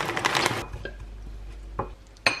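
Dry red lentil fusilli poured from a plastic bag into a steel pot, the pieces rattling against the pot and the bag. The pouring stops about half a second in, followed by a light click and a short knock near the end.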